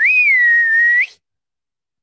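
A single whistled note, about a second long: it rises quickly at the start, holds slightly lower and steady, then turns up at the end and cuts off abruptly.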